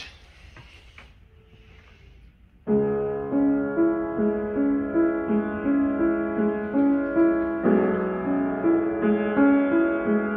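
George Steck US-09 acoustic upright piano being played, starting about two and a half seconds in after a quiet moment. Held low chords sound under a steadily repeating broken-chord figure, with the harmony shifting twice near the end.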